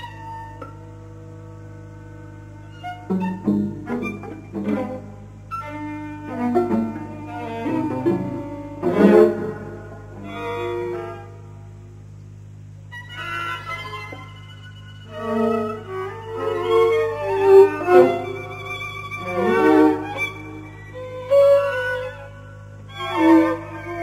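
String quartet (bowed violins, viola and cello) playing a fragmented modern passage: short bursts and flurries of notes broken by pauses, with a lull about halfway through and denser, louder flurries in the second half.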